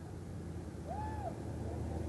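Low, steady rumble of passing car traffic, with one faint short tone that rises and falls about a second in.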